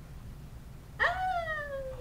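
A person's high-pitched, drawn-out cry of "Ah!" starting about a second in and sliding down in pitch over about a second. Before it there is only quiet room tone.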